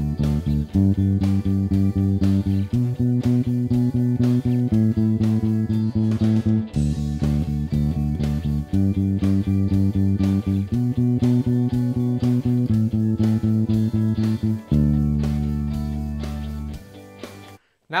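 Fender Precision electric bass playing steady 'pumping' eighth notes on the root of each chord over a slow, country-style backing track, moving through a D, G, B minor, A progression with a change about every two seconds. Near the end it holds one long note, which stops about a second before the end.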